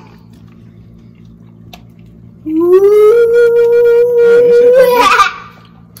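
A man's long, high-pitched vocal wail: it starts about two and a half seconds in, slides up and is held on one note for nearly three seconds, then breaks into laughter.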